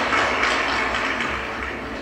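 Audience applause on an old 1957 concert tape, played back over a hall's loudspeakers, slowly dying away.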